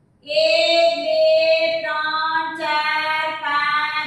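A young woman's voice singing unaccompanied in long, held notes: one long note, then a few shorter notes pitched higher.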